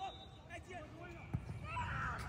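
A single dull thump of a soccer ball being struck for a free kick, about halfway through, over faint distant voices of players.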